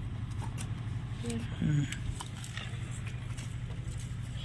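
A steady low hum runs under the garden work, with a few faint clicks. A brief murmured voice sound comes about a second and a half in.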